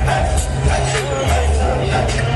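Loud music with a heavy, pulsing bass line and a steady beat.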